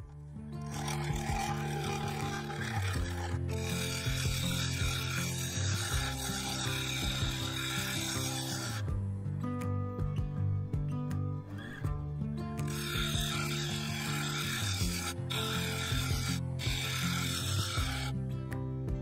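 A bowl gouge cutting a wooden bowl spinning on a wood lathe during final shaping, a steady scraping cut in two spells with a pause of a few seconds in the middle. Background music plays underneath.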